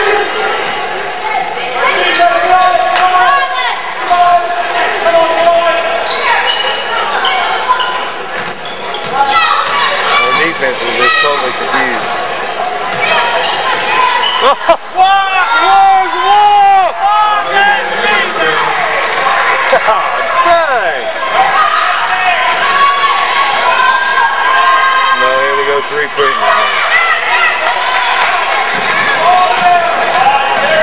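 Live basketball game sound on a hardwood gym court: a ball bouncing, sneakers squeaking in many short, sharp bursts, and voices of players and spectators.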